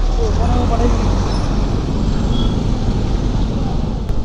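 Motor scooter engine running steadily in stopped street traffic, under a low, even hum of the surrounding vehicles, with faint voices in the first second or so.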